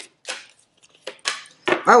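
A deck of oracle cards shuffled in the hands: a handful of short, crisp card snaps and clicks over about a second and a half.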